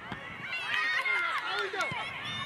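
Several high-pitched young voices shouting over one another during play on a football pitch, with a few short knocks. The sharpest knock comes near the end.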